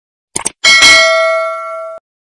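Subscribe-button sound effect: a quick double click, then a bell ding that rings on and fades slowly, cut off abruptly at the end.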